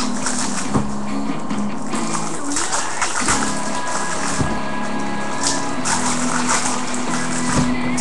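Foil trading-card pack wrappers crinkling and rustling as packs are handled and torn open, a steady crackle throughout, over background music with a low line that changes note every second or so.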